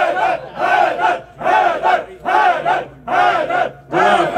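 A crowd of voices chanting a short slogan in unison, over and over in a quick, even rhythm.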